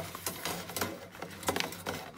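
Paper towel rubbing and rustling against the steel of a phonograph mainspring barrel, with a few light metal clicks, over a low steady hum.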